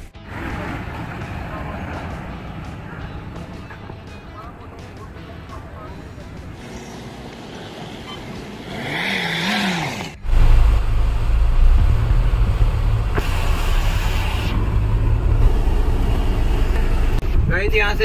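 Outdoor traffic and vehicle noise around parked SUVs. After a sudden cut about ten seconds in, it becomes a loud, steady low rumble of a vehicle driving in convoy.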